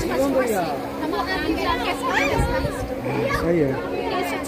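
Several people talking at once in lively conversational chatter over a steady low hum.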